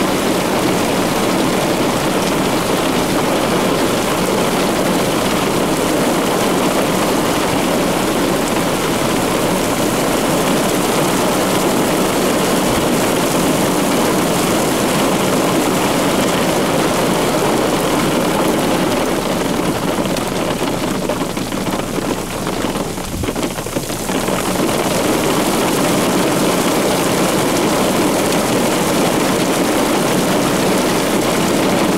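Steady rushing noise of storm wind and rain. It eases for a few seconds about twenty seconds in, then builds back.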